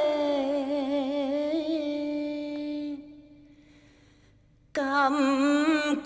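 A woman singing unaccompanied, holding a long wavering note for about three seconds until it fades away; after a short pause she starts the next phrase near the end.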